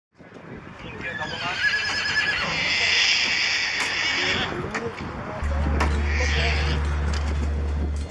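A horse whinnying: one long, quavering whinny lasting about three seconds, then a shorter call. A steady low hum comes in about halfway through.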